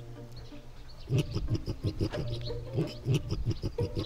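A man imitating a pig with his voice: a quick, irregular run of short, loud pig-like calls starting about a second in.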